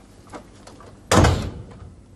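A door being shut: a couple of faint clicks, then one loud knock of the door closing about a second in, fading quickly.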